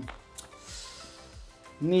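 A pause in a man's talk: a faint click, a soft breath, then his speech starts again near the end.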